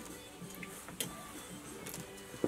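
Soft background music, with a sharp click about a second in.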